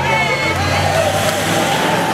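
Engines of passing SUVs, a steady low hum, with the voices of a roadside crowd calling out over it.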